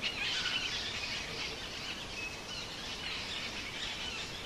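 Birds chirping in a dense chorus of many short, overlapping calls over a steady outdoor background hiss.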